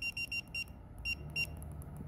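Key beeps from the operation panel of a Juki DDL-9000C industrial sewing machine: short high beeps, three in quick succession and then a few more spaced out. Each beep confirms a press of the up key as the stitch length is raised.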